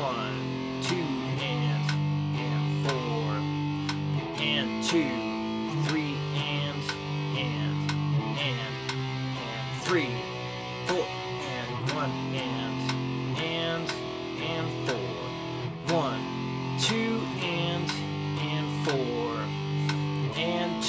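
Electric guitar playing a rhythm exercise of picked power chords, the chords changing every half second to two seconds.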